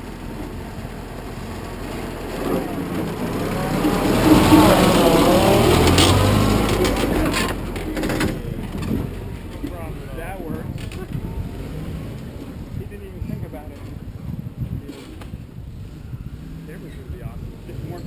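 Old flat-fender Jeep's engine revving up and down as it climbs the rock ledge toward the camera and passes, loudest from about four to seven seconds in, with a sharp knock around six seconds in. It then drops away to a quieter engine sound.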